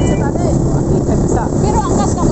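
Steady engine rumble and wind buffeting the microphone from a moving motorcycle, with a few short chirp-like pitch glides over it.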